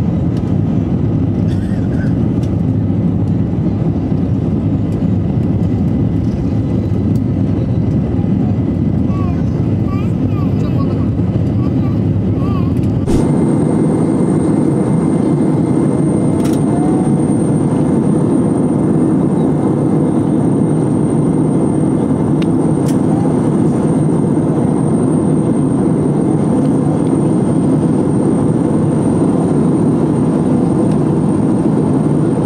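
Steady drone of a jet airliner in its climb, heard inside the cabin: engines and rushing air. About 13 seconds in, the sound changes abruptly to a similar drone with a thin, high steady whine added.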